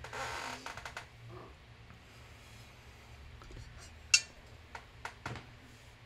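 Handling noise as a heavy enamelled cast-iron Dutch oven is moved off a cutting mat. A brief scrape comes in the first second, then the room is quiet until one sharp knock about four seconds in, followed by a few lighter taps.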